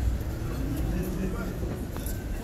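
City street ambience: a steady low rumble of traffic, with indistinct voices.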